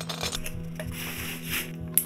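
Nylon backpack fabric and straps rustling as they are handled, ending in one sharp click of a plastic buckle, over a soft, steady music drone.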